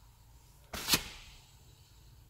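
Brake drum turning on a new wheel bearing: it runs almost silently, smooth and free of noise as a new bearing should, with one short sharp sound about a second in.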